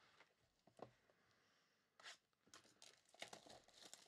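Near silence, broken by faint brief crinkles and tearing of foil trading-card pack wrappers being handled, clustered in the second half.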